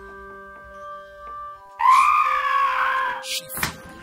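Soft sustained music tones, then about two seconds in a sudden loud high-pitched scream lasting over a second, followed by a few sharp knocks near the end.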